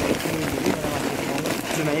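Speech: people talking, with no machine running.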